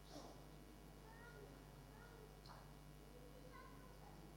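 Quiet church hall with a young child's faint, brief high-pitched vocal sounds, several short rising and falling calls from about a second in, and a soft rustle near the start.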